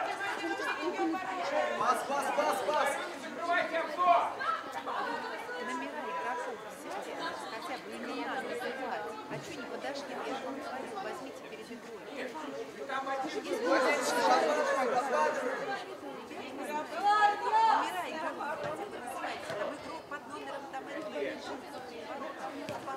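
Voices of players and spectators at a small-sided football game, chattering and calling out over one another, with louder shouts about fourteen and seventeen seconds in.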